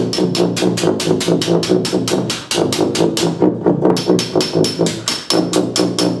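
Fast, even hammer strikes, about six a second, played as percussion against sustained low notes on a helicon, the wrap-around bass tuba, in an improvised duet.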